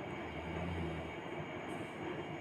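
Chopped red onions frying in hot oil in a kadai: a steady, even sizzle with a low hum underneath.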